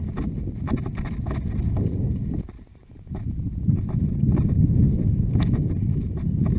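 Hooves of a ridden horse striking a soft grass and dirt track in a regular rhythm, heard from the saddle, under a low rumble of wind on the microphone that drops away briefly about halfway through.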